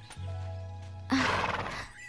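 A horse gives one short, breathy snort about a second in, over soft background music with steady low notes.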